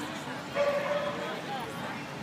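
A Shetland sheepdog giving one drawn-out, high bark about half a second in, over background talk.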